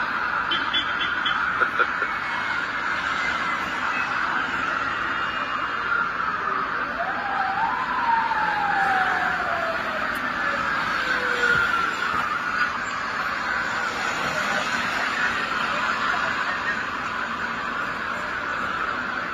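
City street traffic: a steady hum of cars. Around eight seconds in, one vehicle goes by, its pitch sliding downward as it passes.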